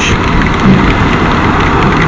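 Steady rushing noise of a Bajaj Pulsar NS200 motorcycle ridden through a heavy downpour: wind, rain and tyre spray on the wet road, with the single-cylinder engine faintly underneath.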